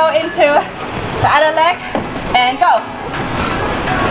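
Women laughing in short wavering bursts, without words. Electronic background music comes up near the end.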